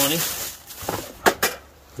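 Plastic bag rustling as it is handled, then a few short light knocks as a wooden toy bank is lifted out.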